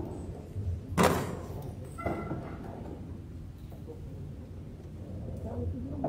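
A single loud knock or thump about a second in, echoing in a large hall, followed about a second later by a lighter knock with a brief metallic ring.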